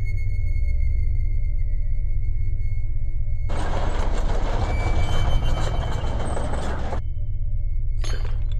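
Animated-film soundtrack: a low steady drone with a thin steady high tone over it. About three and a half seconds in, a loud noisy hiss and crackle sound effect comes in, lasts about three seconds and cuts off suddenly.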